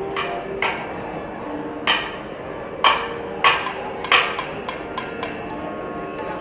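Live percussion music: about five sharp, ringing drum strikes at irregular intervals over a steady held tone.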